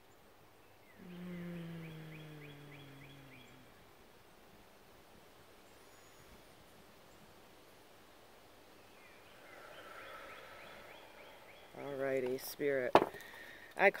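A woman's deep cleansing breaths. About a second in she breathes out with a voiced sigh that slowly falls in pitch for about two and a half seconds, and a softer breath follows near ten seconds. Brief vocal sounds and a click lead into speech near the end.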